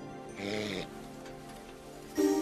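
Soft background music, with one short snore from a man asleep in bed about half a second in.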